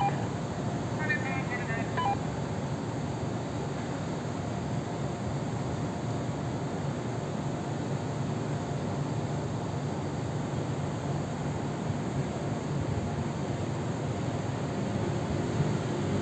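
Steady low background rumble at an even level, with faint voices.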